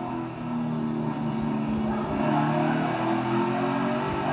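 A NASCAR Cup car's V8 engine running at speed on the in-car camera feed, heard through a television speaker. The note holds steady, with small rises and falls in pitch as the car accelerates.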